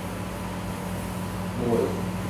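Steady low electrical or motor hum of the room background, with a brief voice sound near the end.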